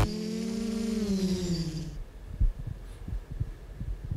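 Quadcopter's electric motors and propellers buzzing, the pitch rising slightly and then falling as it fades out about two seconds in. A single thump follows about half a second later.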